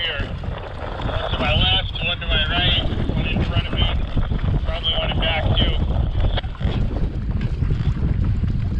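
Wind buffeting the microphone, a steady low rumble throughout, with a few brief bits of voice about one and a half seconds in and again about five seconds in.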